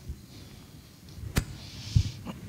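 Quiet room noise in a large hall, with one sharp click about halfway through and a soft breathy hiss near the end.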